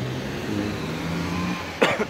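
A person coughs sharply once near the end, over a steady low engine hum.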